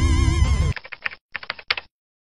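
Background music cuts off, then a quick run of about ten computer-keyboard typing clicks, an editing sound effect, ending abruptly in dead silence.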